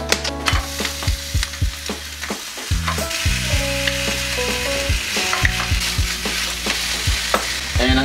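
Sliced ham sizzling as it is laid into a hot frying pan beside scrambled eggs, the sizzle growing fuller about three seconds in. Short clicks and scrapes of a wooden spatula against the pan come through it.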